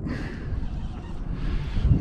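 Wind buffeting the microphone: an uneven low rumble with no clear tone.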